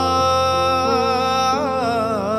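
A man's voice holding one long sung note over a sustained piano chord; the note wavers briefly about three-quarters of the way through.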